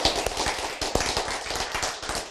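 Applause: many hands clapping in a dense, irregular patter.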